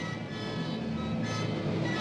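Music: a melody of held notes over a bass line, with the bass note changing once about two-thirds of a second in.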